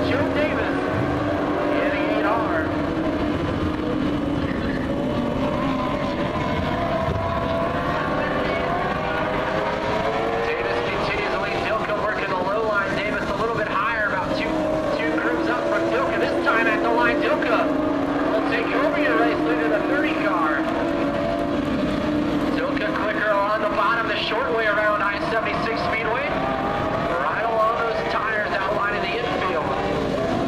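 Several dwarf race cars' motorcycle engines running hard together around a dirt oval, their notes rising and falling in pitch as the cars accelerate and lift through the laps.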